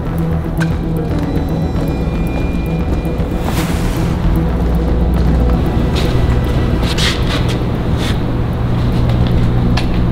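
Background music with a steady low bass, with a few brief sharp accents.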